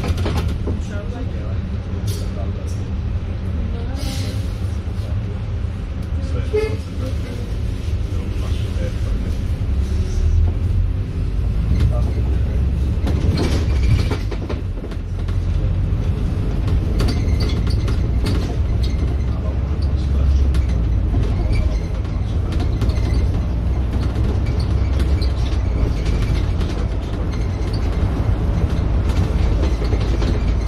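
Volvo B5LH hybrid double-decker bus running, heard from the upper deck: a steady low rumble of drivetrain and road, with occasional rattles and knocks from the body. It grows louder from about ten seconds in as the bus picks up speed.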